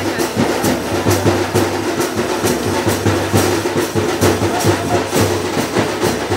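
Drums beaten in a fast, steady rhythm, about three strokes a second.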